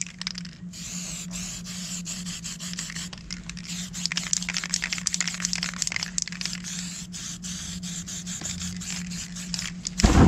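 Aerosol spray paint can hissing in many rapid short bursts with brief gaps, as paint is sprayed over the artwork.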